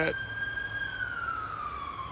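Emergency vehicle siren wailing at a distance: one long tone, held level and then sliding slowly down in pitch from about a second in.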